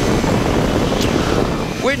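Cors-Air Black Bull two-stroke engine of a flexwing microlight trike running steadily in flight, mixed with wind rush on the microphone.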